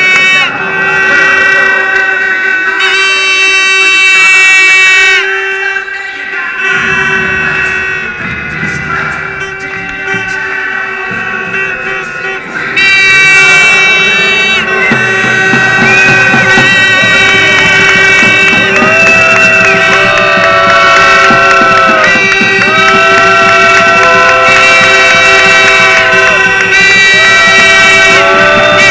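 A loud wind instrument among the crowd plays a melody of long held notes that bend at their ends, over a steady droning tone, with crowd noise underneath. The playing grows softer for a few seconds in the middle, then returns at full strength.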